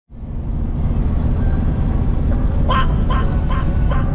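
A car's interior road and engine rumble while driving fades in and runs on steadily. From a little past halfway, a series of short sharp sounds comes in, about two or three a second.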